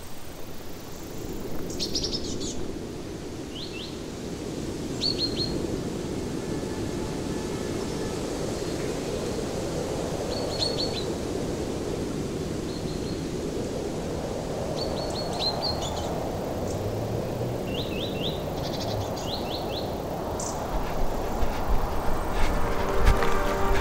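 Outdoor ambience: a steady low noise bed with small birds chirping in short clusters of two to four quick high notes, recurring every few seconds.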